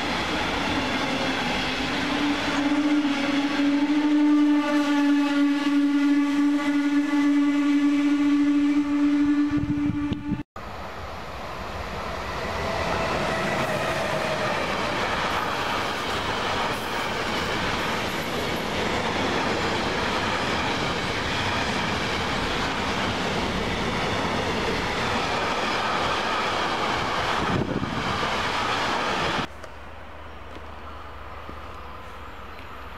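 Double-deck passenger train passing at speed: a steady rolling rumble with a held humming tone and overtones on top. About ten seconds in it cuts to a long container freight train rolling by, an even rumble of wheels and wagons that lasts until a cut near the end.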